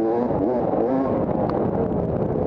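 250-class enduro dirt bike engine under way on a rough woodland trail, its pitch rising and falling as the throttle is opened and closed.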